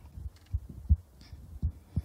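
Handling noise on a handheld microphone: several irregular low thumps, the loudest about a second in.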